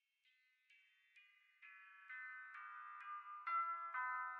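Lo-fi piano melody fading in: single high, bell-like notes struck about twice a second, stepping down in pitch and growing louder. No drums yet.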